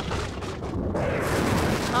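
Thunder rolling: one long rumble that swells slightly toward the end.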